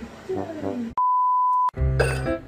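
A single steady 1 kHz bleep tone of about three-quarters of a second, the kind of censor-style beep added as an editing sound effect, with all other sound cut out while it plays. Background music comes in right after it.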